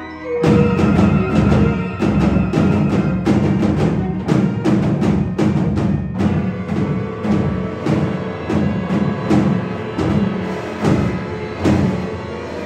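Concert band music with the percussion section to the fore: drums strike a fast, driving rhythm over a low sustained note from the band. The drumming starts suddenly about half a second in, right after a held chord.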